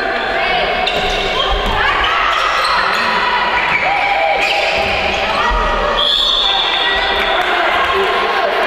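Indoor handball game sounds echoing in a large gym: the handball bouncing on the court, sports shoes squeaking on the floor, and players' voices.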